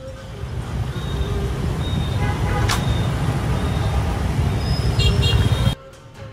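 City street traffic: a steady rumble of motorbike and car engines and tyres, with a brief high beep near the end. The sound cuts off suddenly shortly before the end.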